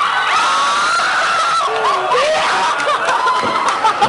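A group of people laughing and shrieking at once, many high voices overlapping in a steady loud din.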